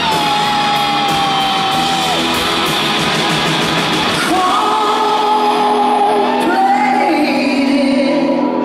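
Live rock band playing, with electric guitar and drums under a woman's singing voice, which holds long sustained notes, one at the start and another from about halfway through.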